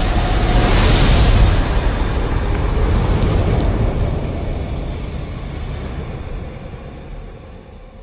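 Cinematic logo-intro sound effect: a loud rush of fiery rumbling noise, heaviest in the low end, that surges about a second in and then fades slowly away.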